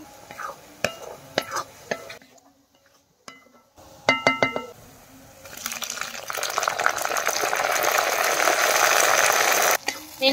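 Onions frying in oil in an iron kadai, a metal ladle clicking and scraping as it stirs. After a short pause comes a quick run of ringing metal clinks. Then a steady sizzle builds and holds as sliced tomatoes go into the hot oil.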